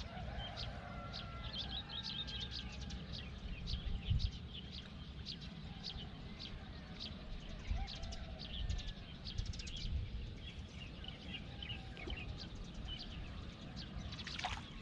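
Small birds chirping and twittering, short high calls repeating quickly throughout, over a steady low rumble, with a soft low thump about four seconds in.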